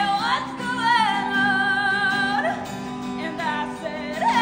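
Solo female voice singing long, held wordless notes with vibrato, sliding up into each new note, over a strummed acoustic guitar.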